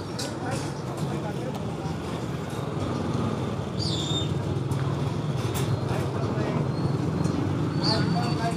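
A small motorcycle engine idling steadily, a low hum that grows a little louder partway through, with street traffic and indistinct voices around it.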